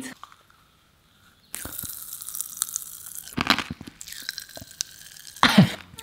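Pink popping candy crackling and fizzing in a mouth held open close to the microphone: a dense patter of tiny pops. It starts after a second and a half of near silence and grows louder twice, in the middle and near the end.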